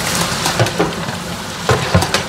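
Chips frying in a chip-shop deep fryer: the oil sizzles with a steady, rain-like crackling hiss. A few sharp knocks come about half a second in and again near the end.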